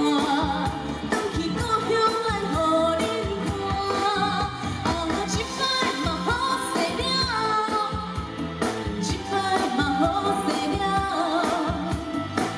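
A woman singing a pop song through a microphone and PA, over amplified band accompaniment with a steady drum beat.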